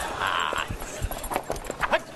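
Hurried footsteps of several people on a wooden floor, with a quick run of sharp steps in the second half.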